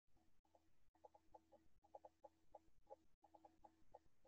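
Near silence: room tone with very faint short pips recurring through it.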